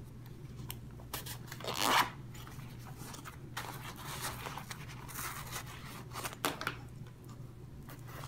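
Zipper on a nylon fabric pouch being pulled open, loudest about two seconds in, followed by scattered rustling and scraping as the fabric bag is handled and opened.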